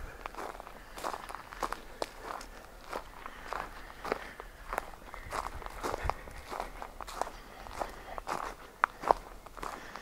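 Footsteps crunching on a wood-chip trail at a steady walking pace, about two steps a second.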